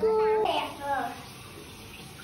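A child's voice briefly, one held note and a few syllables, then a faucet running water into a bathroom sink with a steady hiss.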